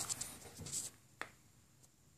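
Faint rustling of the camera being handled, with a single light click about a second in, then near silence.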